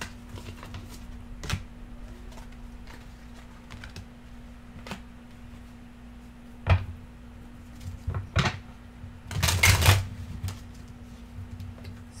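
Tarot and oracle cards handled on a tabletop: scattered taps and clicks of card edges as they are gathered and laid down, then a short, dense rustle of cards being shuffled and spread a little before the end. A steady low hum runs underneath.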